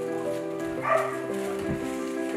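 A single short bark from an F1B Bernedoodle puppy about a second in, over background music.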